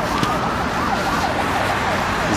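Electronic warbling signal from a pedestrian crossing: a fast, repeating up-and-down tone at about four sweeps a second, over street noise.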